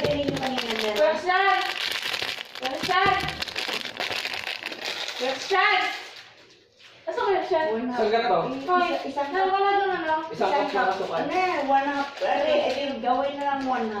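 Young voices talking and chattering, with a package crinkling in the first few seconds.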